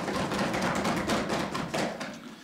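Legislators thumping their wooden desks in applause: a dense, irregular patter of many knocks that dies away near the end.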